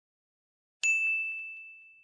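A single bright bell ding, a notification-bell sound effect. It strikes about a second in and rings on one clear high tone, fading away over about a second and a half.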